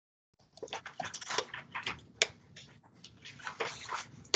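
Irregular rustling and scattered clicks of hands handling something close to the microphone.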